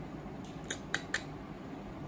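A quick run of about five light, sharp clicks, starting a little after half a second in, as an eyeshadow palette and makeup brush are handled.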